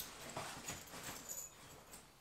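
Faint, irregular soft knocks and rustles of a person moving about a room and handling things, thickest over the first second and a half and then dying down.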